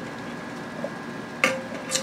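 Low steady room hiss with a few faint short clicks of handling, as a small eyeshadow palette is held and moved, with a brush handle held in the mouth.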